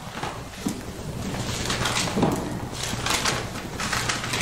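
Rustling and soft scraping of hands and clothing moving right next to a clip-on microphone, in a few uneven bursts as glasses are put on.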